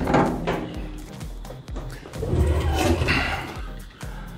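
Steel smoker's cooking-chamber door being unlatched and pulled open: a sudden metal clunk at the start, then uneven rumbling handling noise, over background music.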